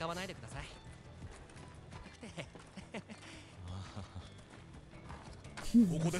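An anime episode's soundtrack playing quietly: a character's dialogue over background music, with a few soft knocks.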